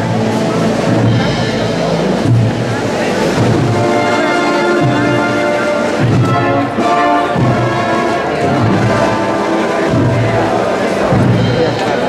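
Processional band music with long held chords over low drum beats, as a Holy Week paso is carried.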